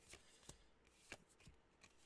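Faint, soft flicks of Yu-Gi-Oh trading cards being slid one at a time through a small hand-held stack, a few short clicks spread over two seconds.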